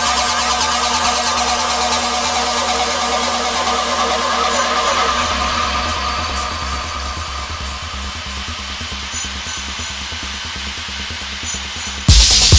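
Techno music in a breakdown: held synth tones over a bright hissing wash and a soft, steady low pulse, slowly getting quieter through the second half.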